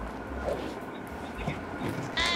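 Quiet background in a shop between bursts of talk: a steady low rumble with faint, indistinct sounds and no distinct sound event.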